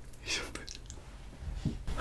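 A man's soft, breathy vocal sounds close to the microphone: a few short airy breaths, with a small click near the end.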